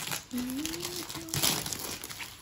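Metallic foil and red gift-wrapping paper crinkling and rustling as it is pulled off a cardboard box. A short hum from a voice is heard early on.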